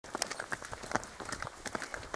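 Hooves of a ridden horse and people's footsteps striking a stone-paved path: an irregular run of short, sharp taps, several a second.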